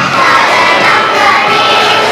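A group of young children singing loudly together in unison into microphones, their voices sliding between notes.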